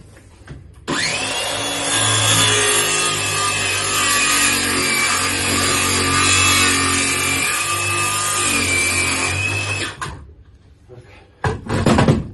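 Circular saw spinning up with a quick rising whine about a second in, then cutting through timber framing for around nine seconds, its pitch wavering as the blade loads in the wood, before it stops.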